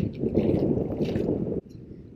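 Wind rumbling on a head-mounted camera's microphone over lapping water. The rumble drops off sharply about one and a half seconds in.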